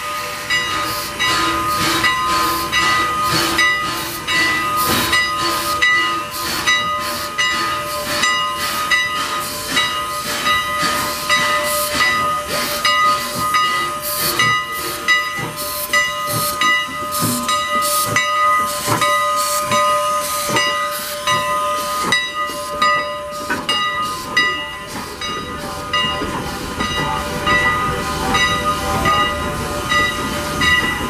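Strasburg Rail Road No. 89, a 2-6-0 steam locomotive, moving slowly under steam: steam hissing, with a steady series of sharp beats about two a second.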